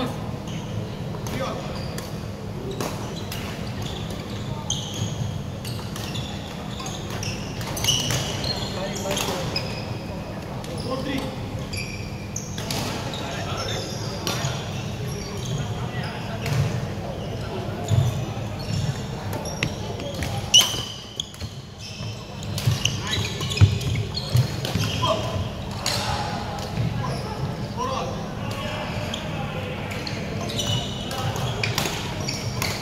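Badminton play in a large, echoing sports hall: sharp, repeated racket hits on shuttlecocks and short shoe squeaks on the wooden court floor, with voices throughout.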